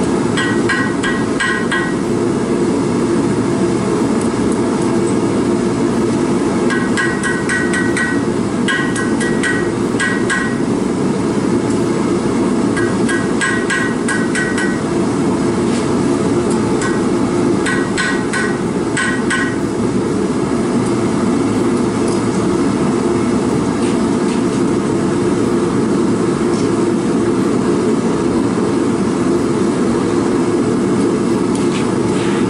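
Hammer striking hot stainless steel wire on an anvil in four quick runs of ringing blows in the first twenty seconds, over the steady roar of a propane forge burner. After that only the burner's roar is heard.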